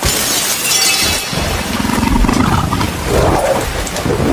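Glass shattering as a dinosaur's clawed foot smashes through a glass pane, starting suddenly and lasting about a second, followed by a low growl.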